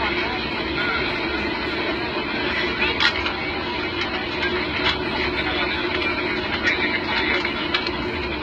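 Steady jet engine and airflow noise heard inside an Air India airliner's cabin on final approach, with a few short clicks.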